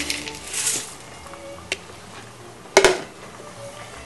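Kitchenware clatter while cooking: a light click a little before two seconds in, then a louder clank near three seconds in, over faint background music.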